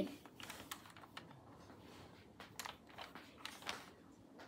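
Faint, irregular light clicks and taps, about a dozen over a few seconds, with the last ones the loudest.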